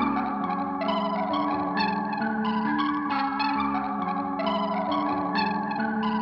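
Live instrumental music led by a Dave Smith Instruments Mopho x4 four-voice analog synthesizer, playing a quick figure of notes that repeats about once a second.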